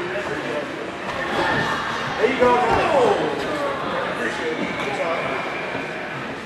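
Several voices calling and shouting over one another, rising to their loudest about two to three seconds in.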